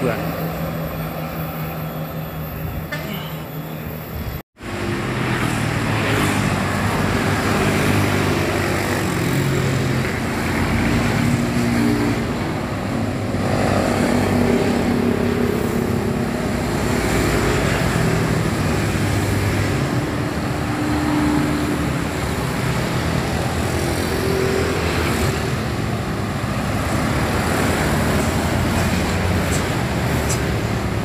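Busy road traffic, with bus, truck and motorcycle engines running as vehicles pass. The sound cuts out briefly about four and a half seconds in. After that, pitched tones shift in steps over the traffic noise.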